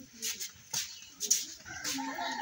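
Street dogs making a few short, scattered sounds.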